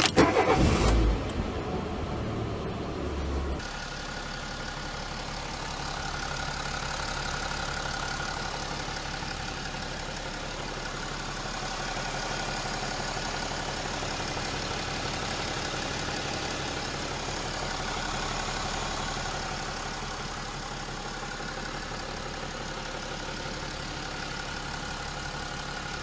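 Car engine being started: loud for the first few seconds as it cranks and catches, then settling into a steady idle with slight rises and falls, which cuts off suddenly at the end.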